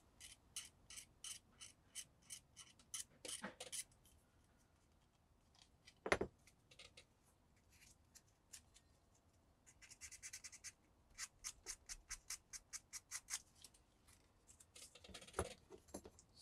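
Faint, quick strokes of a hobby blade scraping a white styrene plastic model part, about three or four a second in spells, taking down a raised spot to get the surface flat. A single sharp knock about six seconds in.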